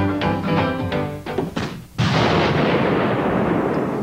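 Theme music with a steady beat stops short, and about two seconds in an explosion goes off suddenly and loudly, its noise dying away slowly over the next two seconds.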